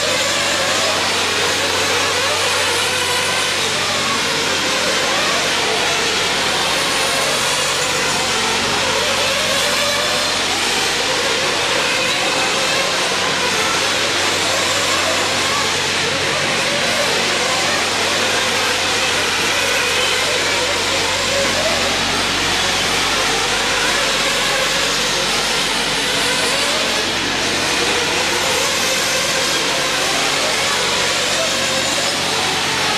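Several 1/8-scale RC truggies racing on an indoor dirt track: a loud, steady mix of their motors and tyres that goes on without a break. A voice runs in the background.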